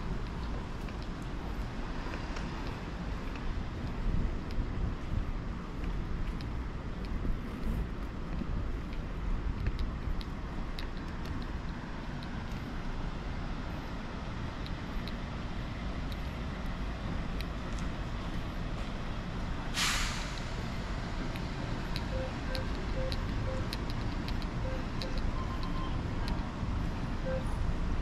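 Street ambience with a steady low traffic rumble, one short sharp hiss about two-thirds of the way through, and faint intermittent beeping near the end.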